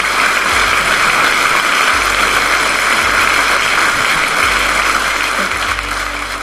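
An audience applauding steadily, dying down slightly near the end, over soft background music.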